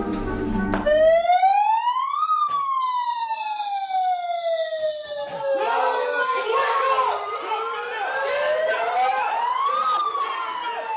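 A siren wailing in slow sweeps, rising over about a second and a half, falling slowly for about five seconds, then rising again near the end: the signal that sets off the 'shark attack' storming of the barracks. Shouting voices join from about halfway through.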